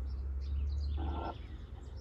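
Faint outdoor ambience: a steady low rumble with scattered faint high bird chirps, and one short pitched blip about a second in.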